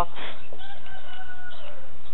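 A drawn-out bird call, held for about a second and falling in pitch at its end, after a short rustle at the start.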